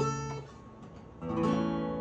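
Acoustic guitar: a strummed chord rings and fades over the first half second, then a new chord is strummed a little over a second in and rings on.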